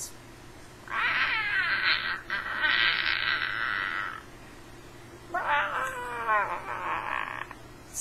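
A girl's voice giving two long, high-pitched wails, one about a second in lasting some three seconds and a shorter one about five seconds in.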